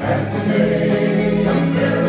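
Folk song performance: several voices singing long held notes together, the chord changing about one and a half seconds in.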